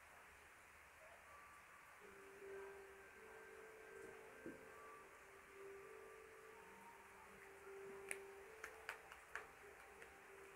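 Faint, on-and-off squeaking tones of a felt-tip marker being drawn across a whiteboard, then several sharp taps of the marker tip on the board near the end.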